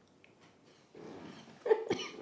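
Near silence, then a woman's short laugh about a second and a half in.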